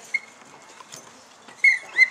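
Short pips from a trainer's whistle: one just after the start, then two close together near the end, the last held briefly.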